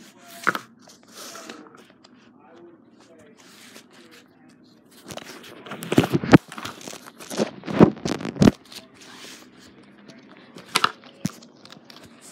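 A sheet of paper being handled close to the microphone: irregular rustling and crinkling, loudest in a run of bursts from about five to eight and a half seconds in.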